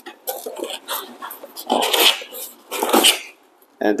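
Cardboard packing cushion being pulled up out of a cardboard shipping box, scraping and rubbing against the box walls in a series of noisy bursts, loudest about two and three seconds in.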